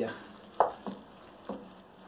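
Wooden spoon stirring risotto rice in a metal pot while butter melts in, with three short knocks or scrapes against the pot.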